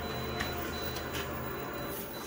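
Photocopier running as it makes a copy: a steady mechanical hum with a thin high whine and a few soft clicks.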